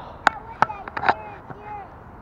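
Feet stuck in deep, soft riverbank mud squelching as they are worked loose, with a few sharp sucking pops.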